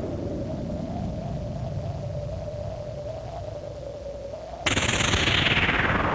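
Intro of an instrumental EBM (electronic body music) track: a wavering sustained synth tone over a low rumbling noise bed. Near the end a sudden loud burst of noise cuts in and sweeps downward in pitch.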